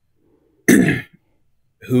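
A man clearing his throat once: a single short, harsh burst about two thirds of a second in, followed by speech resuming near the end.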